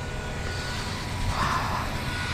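Fan-type snow cannon running: a steady rumbling blow with a constant high whine. A brief rustle about one and a half seconds in.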